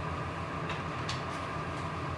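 Steady machine hum with a fast low throb and a constant higher tone, with a few faint ticks over it.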